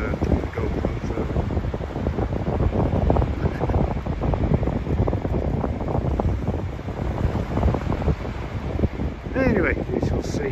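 Wind buffeting the microphone: a loud, steady, gusty rumble. A short wavering, voice-like pitched sound comes near the end.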